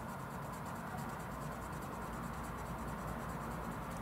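Crayola coloured pencil scratching steadily across paper as a plum swatch is coloured in.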